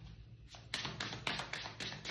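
A tarot deck being shuffled in the hands: a quick run of light card taps and slaps starting about half a second in.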